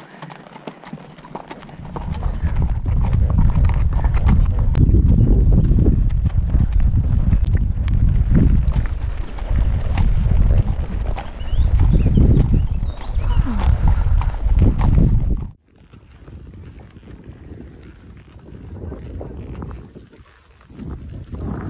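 Haflinger horses' hooves on a gravel track, heard from the saddle, under a heavy uneven low rumble on the microphone from about two seconds in. The rumble cuts off suddenly about three-quarters of the way through, leaving a quieter stretch.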